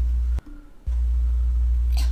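A loud, steady low hum that drops out for about half a second shortly after it starts, then resumes unbroken.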